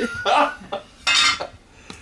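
A metal tin of Minwax paste finishing wax being picked up and handled, giving two short bursts of clatter, the second about a second in.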